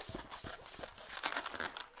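Latex 260 twisting balloon rubbing under the hands as a bubble is formed and twisted: a quiet scatter of small scratchy ticks.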